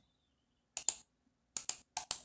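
Computer mouse clicking: a quick pair of clicks just under a second in, then three more quick clicks near the end.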